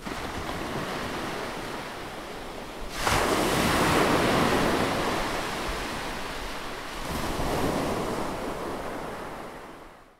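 Ocean surf breaking on a beach: a wave crashes in suddenly about three seconds in and slowly ebbs away, a smaller one swells a few seconds later, then the sound fades out at the end.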